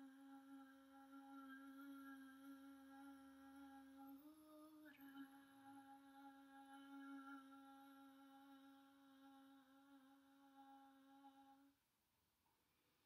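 A woman's voice holding one long, quiet hummed note. It steps briefly up in pitch about four seconds in, drops back, and stops just before the end.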